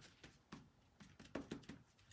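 Faint soft taps of a foam paint dauber being dipped and dabbed on a paper-plate palette to offload paint, a quick run of light dabs that is loudest about one and a half seconds in.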